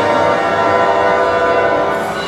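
Symphony orchestra holding a loud sustained chord of many steady pitches, which eases off just after.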